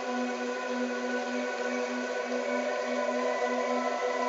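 Synthesized brainwave-entrainment tones: a monaural beat and an isochronic tone built on a 396 Hz base with a 15 Hz beat. Several steady tones are layered over an ambient pad, with a low tone pulsing evenly about twice a second.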